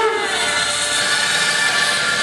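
Amplified yosakoi dance music played over loudspeakers, with long held tones over a busy background.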